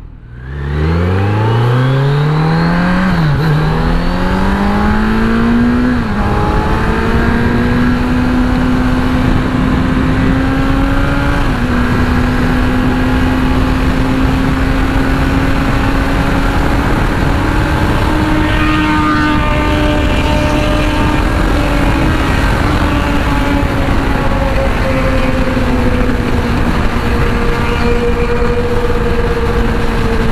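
Onboard sound of a Kawasaki Z900's inline-four engine pulling hard from low revs, with two quick upshifts in the first six seconds, then cruising at a steady, slightly rising engine note. Wind noise on the microphone runs under it throughout.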